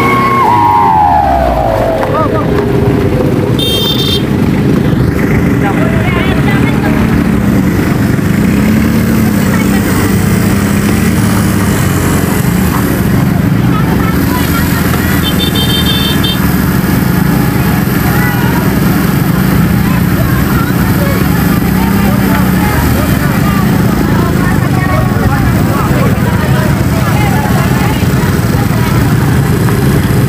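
Motorcycle and small pickup-truck engines running in a steady stream close by on a gravel road, their pitch wavering up and down as riders throttle. At the very start a horn-like tone falls in pitch over about two seconds.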